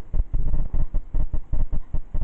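Camera handling noise: low, irregular rumbling and bumping on the microphone as the camera is moved.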